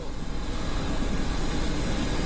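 Steady roar of machinery running on an airport apron, a low rumble with a hiss over it and no breaks.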